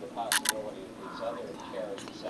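Two sharp clicks in quick succession about a third of a second in, over talk from a television playing in the background.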